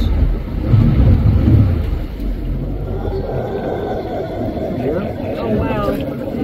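Boat's outboard motor running, its low drone dropping away about three and a half seconds in, with people's voices near the end.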